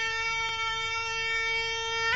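Muay Thai sarama music: a Thai pi java reed pipe holding one long, reedy, nasal note.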